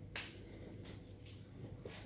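A wooden chess piece set down on a wooden board: one sharp click just after the start, followed by a few fainter clicks over a low room hum.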